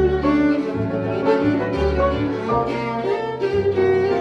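Live jazz trio of violin, piano and upright double bass playing a slow tune: the bowed violin carries the melody over low double bass notes.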